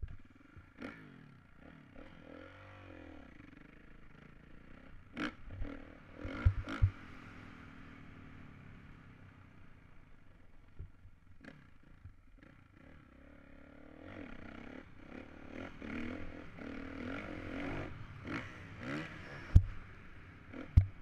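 Dirt bike engine heard from a helmet camera while riding, the revs dropping and climbing as the throttle is worked, louder and busier in the second half. Several sharp knocks come through, the loudest just before the end.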